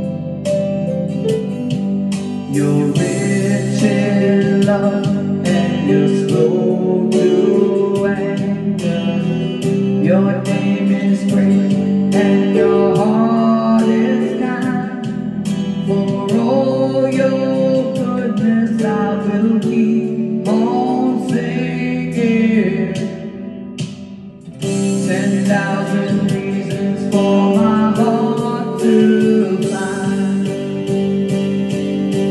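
A woman singing a worship song into a handheld microphone over a karaoke backing track with guitar. The backing drops away briefly about three-quarters of the way through, then comes back in.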